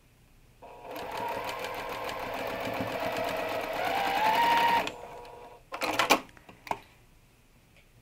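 Juki sewing machine stitching a seam for about four seconds, its hum rising in pitch as it speeds up near the end, then stopping. A few sharp clicks follow about a second later.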